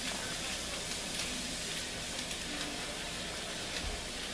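Steady hiss, with faint crinkling of a plastic candy wrapper being opened by hand.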